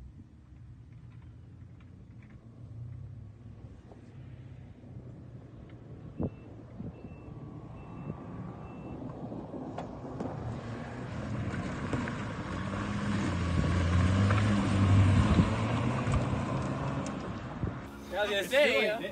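A hatchback car driven hard through a dirt slalom comes closer and grows louder. Its engine revs rise and fall with the throttle, over the rough scrabbling of tyres on loose dirt and gravel, and it is loudest a few seconds before the end.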